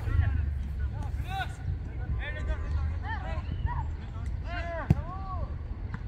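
Several voices shouting short calls during a football match, with a steady low rumble underneath and one sharp knock about five seconds in.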